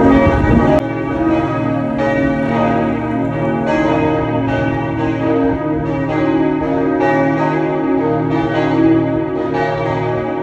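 Church bells ringing: several bells struck in an uneven, overlapping sequence, their tones hanging on in a steady hum between strokes. A rush of noise covers the first second.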